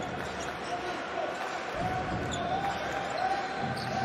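A basketball being dribbled on a hardwood court during live play, over steady arena background noise.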